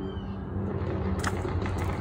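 A child's feet landing on loose river pebbles after a jump from a rock, with a few short crunching steps about a second in, over a steady low background rumble.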